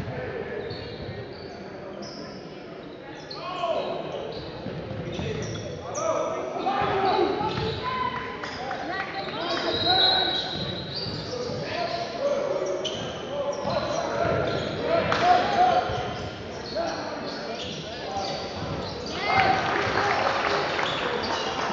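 Basketball being dribbled and bounced on a hardwood gym floor during play, amid indistinct shouting and voices from players and onlookers, echoing in a large gym.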